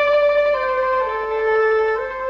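Background music: a slow melody of long held notes on a wind instrument, stepping down in pitch twice.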